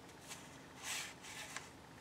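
Soft rustling of paper and cardstock as a tag is slid into a paper flap, a few brief swishes, the clearest about a second in.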